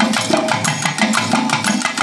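Nadaswaram reed pipes playing a gliding, ornamented melody over steady thavil drum strokes.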